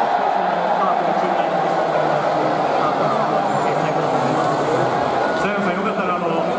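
A man's voice over a stadium public-address system, echoing.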